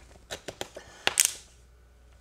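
A few light clicks and knocks, then one louder, sharper clack just over a second in, from small objects being handled on a desk.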